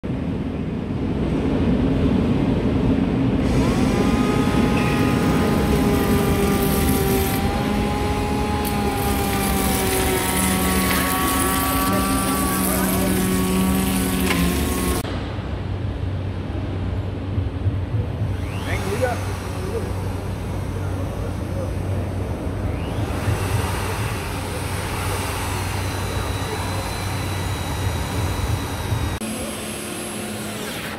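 A handheld electric tool running as it chamfers the edge of a glulam timber beam, its whine shifting slightly in pitch under load. About halfway through, a heavy corded drill takes over, driving a long reinforcement screw into the timber with a steady low motor hum.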